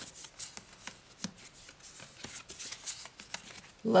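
Tarot cards being turned over one by one and laid on top of face-up piles: a run of light card slaps and slides, irregular, about two or three a second.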